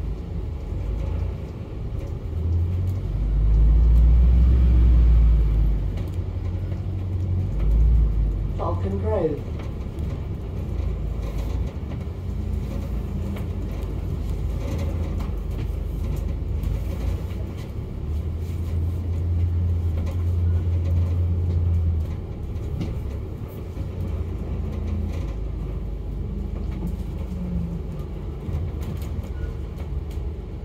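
Cabin of a moving London double-decker bus: steady engine and road rumble that swells loudly about three to six seconds in and again briefly near eight seconds, with a short falling squeal just after.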